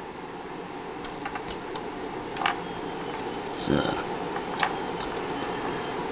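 Light, scattered clicks and taps of oscilloscope probes and clip leads being handled and hooked onto a breadboard circuit, with a short low thump a little past halfway, over a steady background hum.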